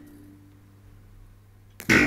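A short pause in the folk orchestra's music, with only a faint low note lingering, then near the end a sudden loud plucked-string attack as the balalaika ensemble comes back in.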